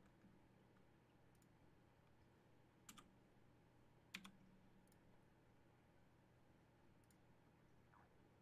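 Near silence with a few faint clicks of a computer mouse: two quick pairs about three and four seconds in, the second pair the loudest.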